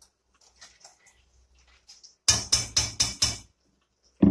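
Kitchen utensils knocking: faint light clicks, then five sharp strikes in quick succession, about four a second, a little past halfway.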